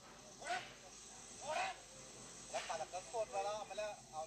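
People's voices: two short calls, then quick chatter near the end, over a steady high hiss.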